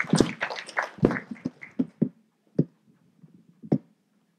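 A run of short knocks and taps, close together for about the first second, then a handful of separate ones spaced roughly half a second to a second apart, thinning out toward the end.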